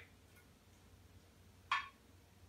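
Mostly quiet, with one brief scrape of a metal spoon against a glass baking dish near the end as sauce is spread over the bottom.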